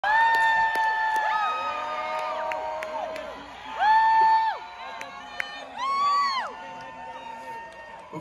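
Concert crowd cheering, with several nearby fans letting out long, high 'woo' calls over it. The loudest calls come at the start, about four seconds in, and again around six seconds.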